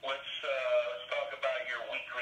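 A voice in continuous phrases, with a thin sound cut off in the highs, like a phone or radio.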